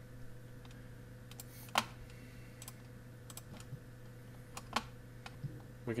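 Scattered clicks of a computer mouse and keyboard being worked at a desk, about eight sparse taps with the loudest a little under two seconds in, over a low steady electrical hum.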